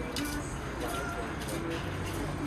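Indistinct voices talking in the background, with a few light clicks and knocks. A faint, steady high whine runs underneath.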